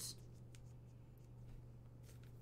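Near silence: a few faint ticks and light scrapes of a trading card and paper being handled and set down on a table, over a steady low hum.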